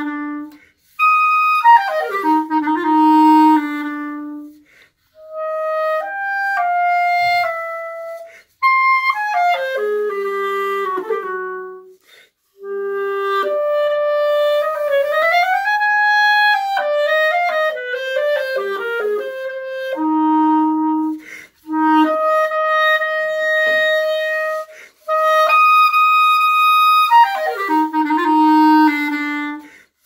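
Solo clarinet played on an ALTA Ambipoly synthetic reed, in short phrases of quick descending runs and held notes separated by brief pauses. About halfway through, one note slides smoothly up and back down.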